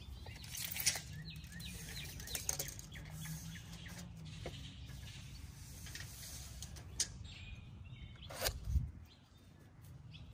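Faint handling sounds of a steel tape measure being drawn out along a pine 2x8 board, with small clicks and a louder rattle about eight and a half seconds in as it goes back into its case. A few faint bird chirps come early on.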